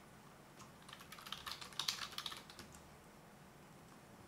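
Typing on a computer keyboard: a quick run of faint clicks lasting about two seconds, busiest in the middle.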